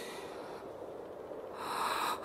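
A person's sharp, noisy intake of breath, like a gasp, starting about one and a half seconds in, over a faint steady background.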